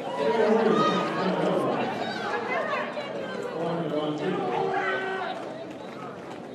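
Many overlapping voices chattering and calling out, with no single speaker standing out; it gets a little quieter near the end.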